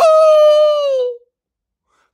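A man imitating a dog's howl with his voice: one long, loud howl held for about a second, its pitch sinking slightly as it fades out.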